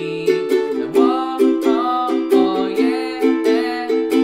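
Ukulele strummed in a steady down-down-up-up-down-up pattern through C, A minor, E minor and D chords, with a man singing along to it ('oh-oh-oh, yeah-yeah').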